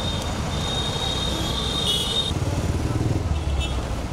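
Street traffic: cars driving past with a steady low rumble of engines and tyres, swelling briefly near the end. A thin high whine runs through the first half and stops about two seconds in.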